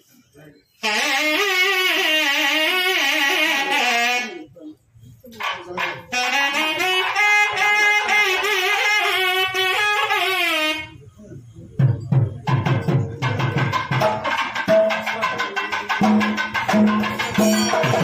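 A conch shell blown in two long, wavering blasts, the second sagging in pitch as it ends. About twelve seconds in, temple percussion starts up with a fast beat.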